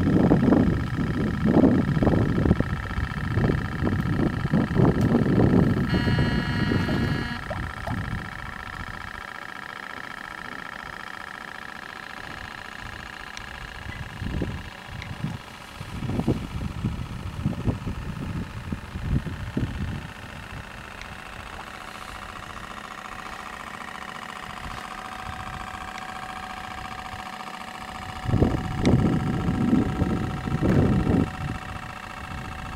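Wind buffeting the microphone in irregular gusts, heaviest in the first several seconds and again midway and near the end, over a steady mechanical whine. A brief higher tone comes in about six seconds in.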